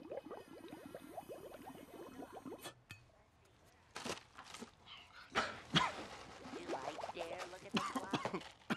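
Film soundtrack: a quick rhythmic music passage that cuts off about a third of the way in, followed by a few sharp knocks and rattles and then a voice near the end.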